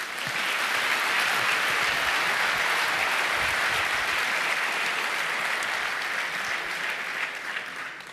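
A lecture-hall audience applauding steadily at the end of a talk, a dense sustained clapping that eases off slightly near the end.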